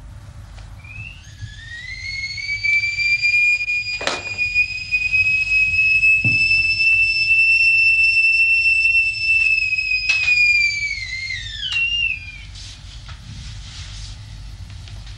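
Stovetop kettle whistling. The whistle rises in pitch over a couple of seconds, holds one steady high note, then drops and dies away near the end. A few sharp knocks are heard with it.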